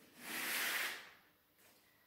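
A single breathy exhale lasting about a second, a soft hiss of air let out on the effort of a seated leg push-and-drag exercise.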